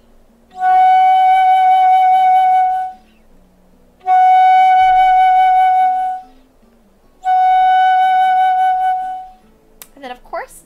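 Concert flute playing upper F sharp (F#5): three long held notes of the same steady pitch, each about two seconds, with short pauses between.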